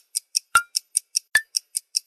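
Rhythmic ticking beat of about five sharp clicks a second, every fourth click louder and carrying a short pitched ping. It sounds like a clock-like ticking percussion track used as intro music.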